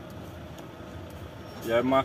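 Truck engine running steadily at low speed, heard from inside the cab as a low, even noise, with a man's voice starting near the end.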